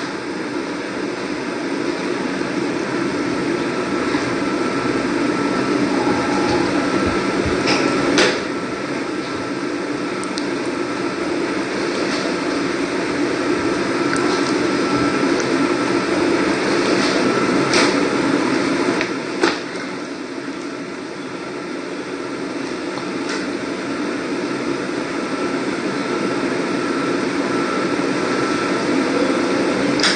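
Steady room noise, a continuous hiss and hum, with a few short clicks about eight seconds in and again around eighteen and nineteen seconds in.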